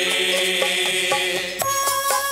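A group of worshippers singing a devotional chant together, with instruments and regular percussion strikes. The singing breaks off about one and a half seconds in and the instrumental melody and percussion go on.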